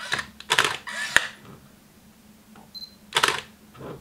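Canon EOS 5 film SLR taking a picture in full auto: a string of short mechanical whirs and a sharp click, a brief high autofocus beep near the end, then a louder burst of motor noise. The built-in flash is popping up and folding back by itself.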